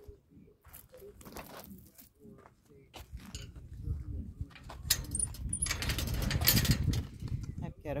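Handling noise from a phone on a selfie stick carried while walking: scattered knocks and rustles, growing louder and busier about three seconds in, with a couple of faint high chirps a couple of seconds later.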